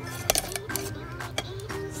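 Sharp plastic clicks, the loudest about a third of a second in and another near the middle, as bamboo feeding tongs are pulled out and the small clear hatch of a plastic enclosure lid is snapped shut. Background music plays throughout.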